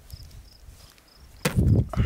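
Faint, high insect chirps repeating about four times a second over a quiet background. About one and a half seconds in, a sudden loud burst of noise cuts in.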